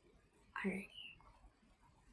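Only speech: a woman softly says "alrighty" about half a second in, with quiet room tone around it.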